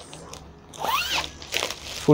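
Suit garment bag of fabric and clear plastic being handled and opened: a crinkling rustle that is loudest for about a second near the middle, with a short rising-and-falling rasp.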